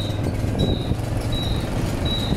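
Road bicycle squeaking once per pedal turn: a short high squeak about every three-quarters of a second over a steady low rumble of riding.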